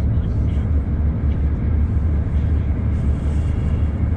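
Car driving at highway speed, heard from inside the cabin: a steady low rumble of road and engine noise.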